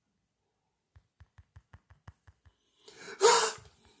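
Rapid soft taps of a finger on a phone's touchscreen, heard through the phone as dull thumps about six a second, from fingers too slick with lotion to work the stop button. A loud, sharp gasp breaks in about three seconds in.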